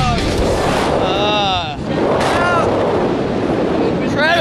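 Steady wind rushing over the camera microphone during a parachute canopy ride, with two short rising-and-falling vocal exclamations about a second and two seconds in.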